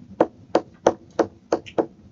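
Stylus tapping and clicking on a tablet screen while hand-printing capital letters: a quick series of sharp taps, about four or five a second.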